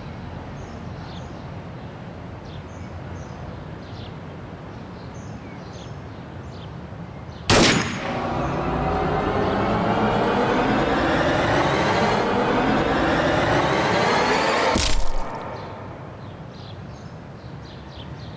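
Film soundtrack: birds chirp over outdoor background until a sudden hit about halfway in. That hit sets off a loud dramatic swell of rising tones lasting several seconds, which ends abruptly in a sharp bang, a pistol shot, before the birdsong returns.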